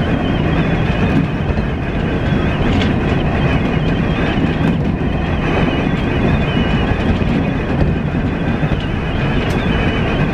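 Tobu Isesaki Line electric train running along the track, heard from the front car: a steady rumble of wheels on rails with a faint high whine over it and a few light clicks.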